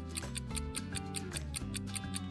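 Background countdown music: a steady bass line under a fast, even ticking beat of about five ticks a second.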